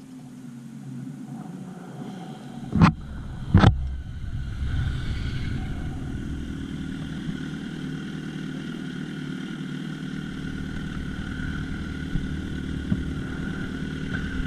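Sport motorcycle engines drawing near and pulling up, then idling steadily side by side. Two loud sharp thumps come a little under a second apart about three seconds in.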